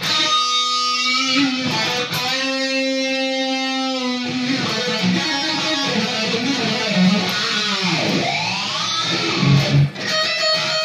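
Electric guitar played solo: a long held note about a second in, followed by a run of shorter notes, then a note that swoops down in pitch and back up near the end.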